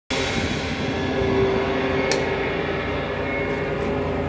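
Steady outdoor hum with several held tones running underneath, and a single sharp click about two seconds in; no drumming yet.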